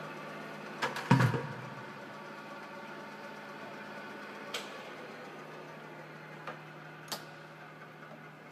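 Italian Rosa vertical milling machine running with a steady mechanical hum, as its speed is being changed. A loud clunk comes about a second in, and a few sharp clicks follow later as the hum slowly gets quieter.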